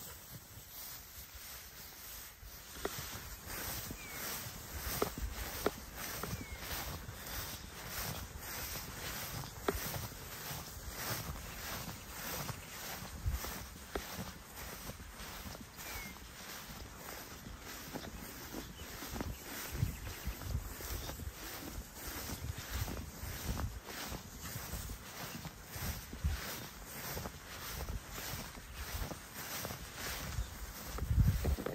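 Footsteps of a person walking through tall pasture grass, the stalks swishing against the legs at a steady pace of about two steps a second.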